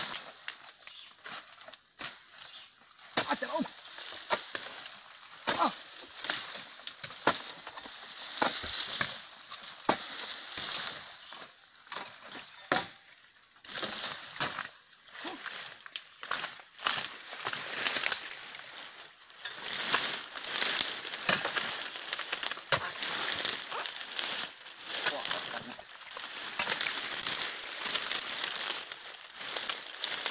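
Oil palm fronds being pruned: irregular cutting strikes mixed with the rustle and crackle of stiff, dry fronds being hacked and pulled away.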